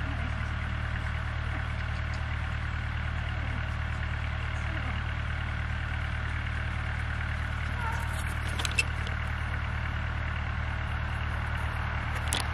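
Steady low mechanical hum throughout, with a few faint clicks and one sharp click about nine seconds in.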